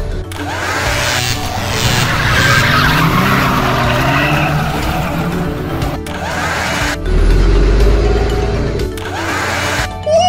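Added car sound effects (engine and skidding noises) over background music, with swooshing effects and a deep rumble from about seven to nine seconds in.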